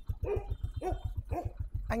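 Win 100 motorcycle's single-cylinder four-stroke engine idling with an even, slow beat of about a dozen pulses a second, each firing stroke heard separately. Three short dog barks sound over it in the first second and a half.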